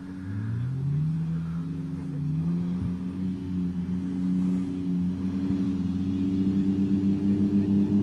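Engines of a turbo Volvo 760 and a Buick Regal 3.8 racing across a field, heard from a distance. One engine climbs in pitch over the first couple of seconds as it accelerates, then the engines hold a steady note that edges higher toward the end.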